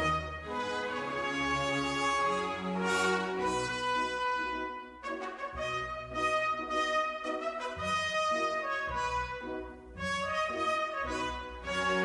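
Brass music playing slow, held chords.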